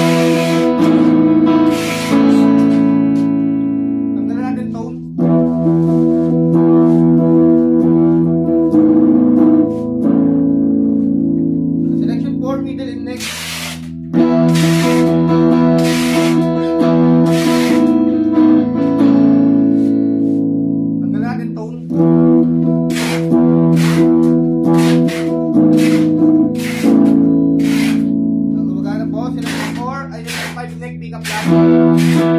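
Thomson Stratocaster-style electric guitar played on its middle pickup: strummed chords left to ring and fade, with quicker strums in the last third.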